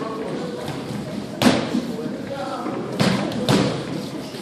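Boxing sparring in a ring: three sharp thuds, about a second and a half in, at three seconds and half a second after that, over background voices in the gym.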